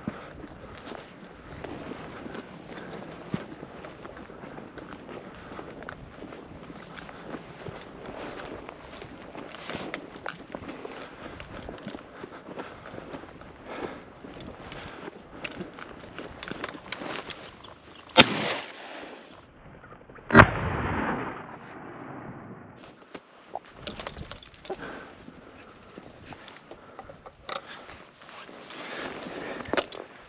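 Footsteps through dry grass and brush. About 18 seconds in there is a sharp crack. About two seconds later comes a single shotgun shot at a flushing quail, the loudest sound, its report fading over a second or so.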